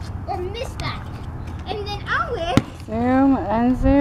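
Children's voices talking and calling out, building to loud, high, drawn-out calls in the last second. About two and a half seconds in there is one sharp thud of a basketball bouncing on the asphalt.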